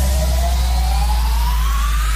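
Music: a synthesizer tone sweeping steadily upward in pitch over a held low bass note, with no beat. This is a build-up riser in an electronic dance-pop track.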